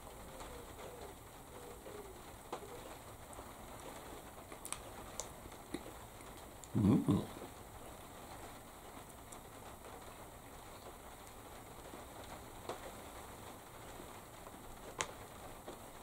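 Quiet room with a few faint clicks, and a man's single short hummed "mm" about seven seconds in as he eats a sweet roll.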